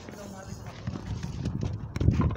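A frontón ball knocking against the concrete wall and court, with voices, and a low rumble that swells near the end.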